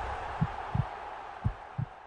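Logo-sting sound effect: a soft hissing shimmer with low double thumps in a heartbeat rhythm, about one pair a second, fading out near the end.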